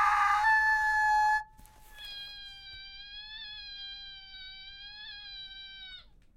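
A woman's long scream held on one high, steady pitch: loud for about a second and a half, then suddenly cut off; after a short gap it comes back quieter on nearly the same pitch, with a slight waver, and is held until it stops near the end.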